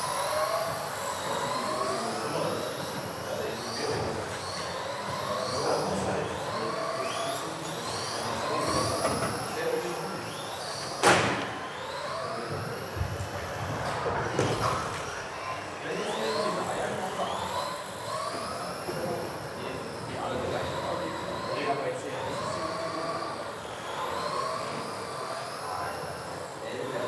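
Several electric RC race cars running laps: their motors whine, rising in pitch as they accelerate and falling as they brake, again and again. A sharp knock comes about eleven seconds in.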